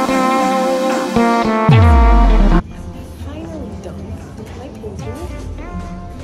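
Background pop music with deep bass notes that slide down in pitch, cutting off abruptly about two and a half seconds in. A much quieter stretch with voices follows.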